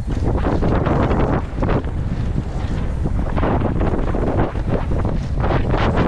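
Wind buffeting a helmet-mounted camera's microphone as a mountain bike descends a dirt trail at speed, under a steady rush of tyre noise on gravel with irregular knocks and rattles from the bike over the rough surface.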